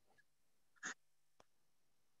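Near silence: room tone, broken by one short faint noise about a second in and a small click about half a second after it.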